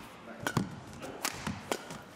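Badminton rally: several sharp cracks of rackets striking the shuttlecock, mixed with the players' footwork on the court, over the low ambience of a large hall.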